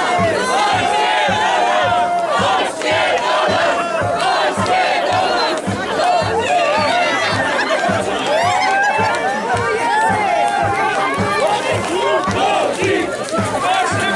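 A crowd of winter swimmers shouting and singing together, many voices at once, over a steady low thumping beat.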